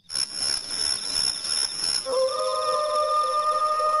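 Synthesized music sting under a countdown title card: steady high held tones throughout, with a lower pair of held tones entering about halfway through.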